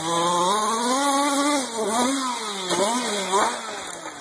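Small two-stroke gas engine of a Losi 5ive T 1/5-scale RC truck revving up and down under throttle as it drives, with a long rise in pitch in the first second and a half followed by several shorter blips. It grows fainter near the end.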